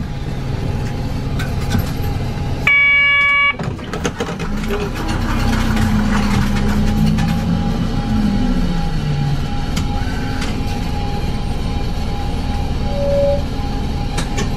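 Diesel city bus running, heard from inside the cabin, its engine note climbing and holding then dropping away about two-thirds of the way through. A short electronic beep sounds about three seconds in.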